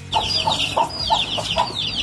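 Chickens clucking in a rapid run of short calls, about three or four a second.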